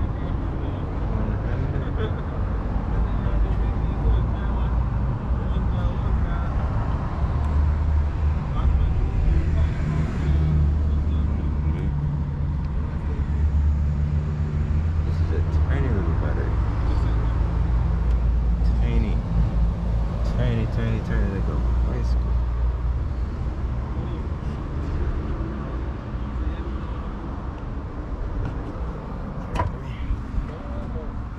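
A car engine running steadily with a low hum, with muffled talk at times.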